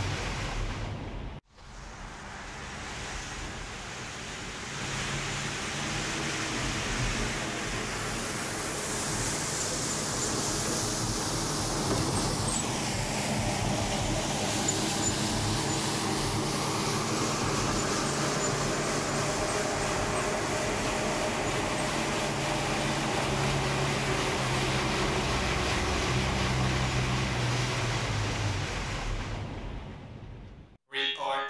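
Road traffic noise: a steady wash of passing vehicles with a low hum, briefly cut off about a second and a half in.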